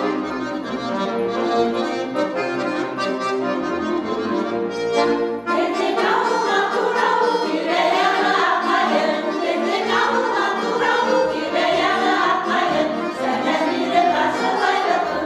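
Button accordion playing a folk tune. About five and a half seconds in, a group of women's voices joins in, singing along with the accordion.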